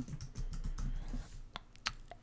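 Computer keyboard keys clicking as a word is typed: a run of quick keystrokes that thin out to a few single clicks in the second half.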